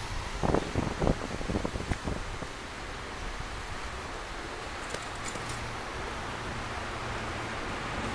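Steady outdoor street noise with a low rumble of distant traffic. A few dull thumps of wind or handling on the microphone come in the first two seconds.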